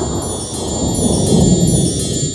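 Closing bars of a karaoke backing track with the melody removed: a sustained B minor chord under a shimmer of wind chimes.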